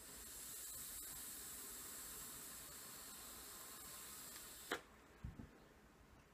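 Faint, steady hiss of a long draw on a sub-ohm rebuildable vape atomizer, with air pulled through the airflow holes over the firing coil, lasting about four and a half seconds. It ends with a sharp click, followed by a couple of soft low thumps.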